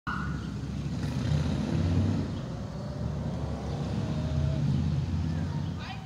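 Wind buffeting the microphone: a loud, uneven low rumble that swells and dips throughout.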